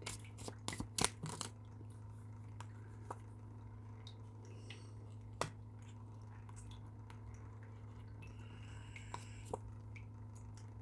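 Tarot cards being shuffled and laid out on a table: a quick run of soft clicks and taps in the first second and a half, then an occasional light tap, over a steady low hum.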